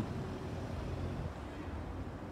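Steady low rumble of outdoor background noise, with a faint low hum that fades out after about a second.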